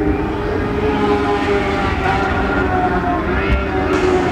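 Several Lightning Sprint cars, small winged sprint cars with motorcycle engines, running at speed together on a dirt oval. Their engines make a steady, even drone.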